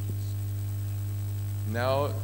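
A steady low electrical hum, mains hum in the microphone and amplification chain. A voice starts speaking near the end.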